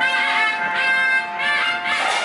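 Traditional Kola ritual music: a reedy wind instrument plays a bending, ornamented melody over a steady drone.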